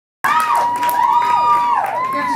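Concert audience screaming and cheering, with high-pitched shrieks rising and falling and one long held scream, cutting in suddenly about a quarter second in.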